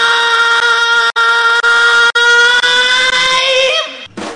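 A rock singer holding one long, high sung note at a steady pitch, which bends just before it stops. The sound cuts out abruptly for an instant twice.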